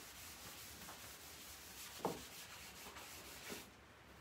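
Faint steady rubbing of a cloth rag wiping oil-based gel stain across a solid oak tabletop, with a light knock about two seconds in.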